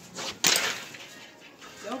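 A sudden rustle about half a second in, fading over about half a second: handling noise from a phone being carried and swung around.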